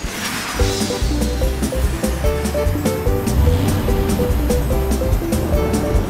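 Fast action background music with strong bass and a quick run of notes. A whooshing jet-pack sound effect sweeps in at the start.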